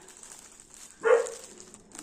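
A dog barks once, a single short bark about a second in.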